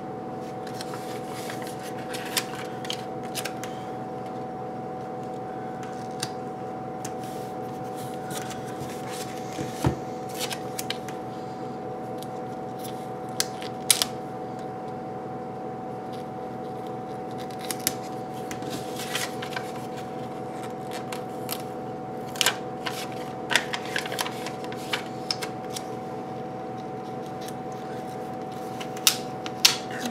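Paper planner stickers being peeled off a sticker sheet and pressed onto planner pages: scattered soft rustles, ticks and paper crinkles. A steady hum runs underneath.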